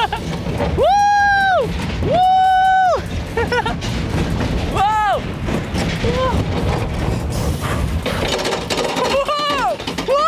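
Small roller coaster train running along its track with a steady rumble and clatter. Over it come long, drawn-out rider cries of excitement, two long ones about a second and two seconds in and shorter ones after.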